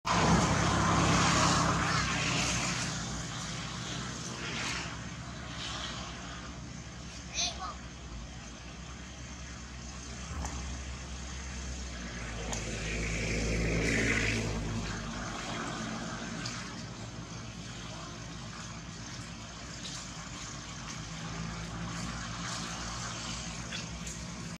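A motor vehicle engine running, with a swell in level about a dozen seconds in, and voices or calls over it; a short high squeak about seven seconds in.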